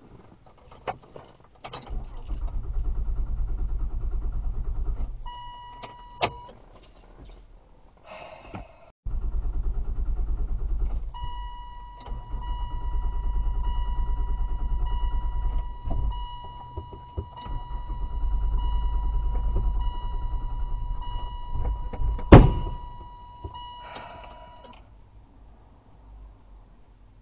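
2004 Saturn Vue's starter cranking the engine in several separate attempts, a few seconds each, without it catching: a no-start right after refuelling, which the owner puts down to a failing EVAP purge solenoid stuck open and flooding the engine with fuel vapour. A dashboard warning chime beeps steadily through the later attempts, and a sharp click near the end is the loudest sound.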